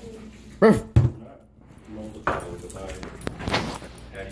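Small dog giving short barks, the loudest about half a second in.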